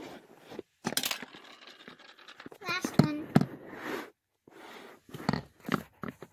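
A child's voice making a few short sounds that aren't clear words, mixed with several sharp knocks and taps in a small room.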